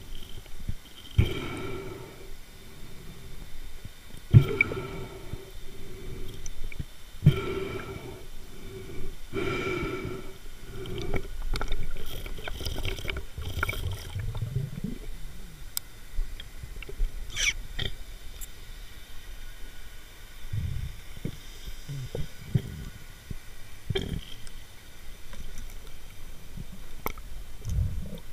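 Muffled, irregular knocks and low rumbling of water and handling, heard through an underwater camera's housing, with a few louder swells in the first half.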